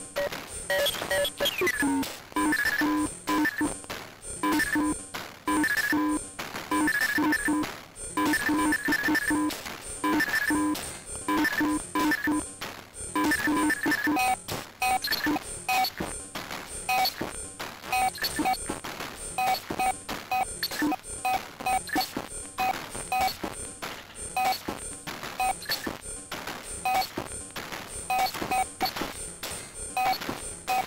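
Eurorack modular synthesizer built around a Moffenzeef GMO making telephone and dial-up-like electronic noise: chopped, semi-rhythmic beeps and tones over a rapid stutter of clicks. About halfway through, the pattern changes from paired low and high tones to sparser, higher single beeps.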